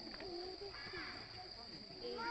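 Insects trilling in one steady high note, with a short rising-and-falling call about a second in.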